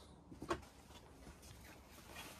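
Mostly quiet, with one short spoken 'okay' about half a second in.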